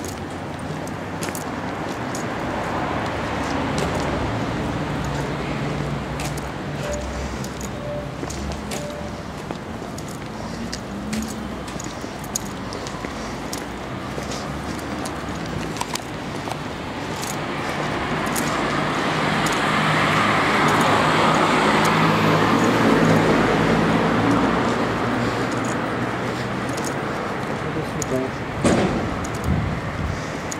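City street traffic noise, with a motor vehicle passing that grows louder over several seconds, is loudest about two-thirds of the way through, then fades.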